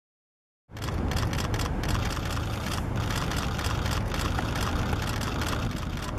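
A large SUV's engine idling close by, a steady low sound with scattered clicks on top. It cuts in abruptly under a second in, after silence.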